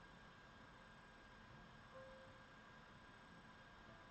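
Near silence: room tone with a faint steady hiss and hum.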